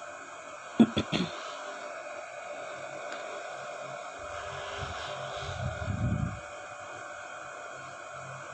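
Steady hiss of a paratha cooking on a hot tawa over the stove, with a couple of faint clicks about a second in and a low rumble in the middle.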